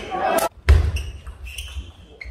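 Table tennis match sounds in a large hall: a short loud shout as a point ends. A moment later come a low thud and faint ball ticks as play resumes.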